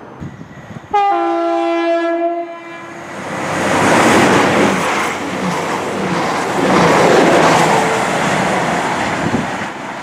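East Midlands Railway Class 222 Meridian diesel multiple unit sounds its horn for about a second and a half. It then runs through the platform at speed, a loud rush of engines and wheels that swells twice, around four and seven seconds in, before fading near the end.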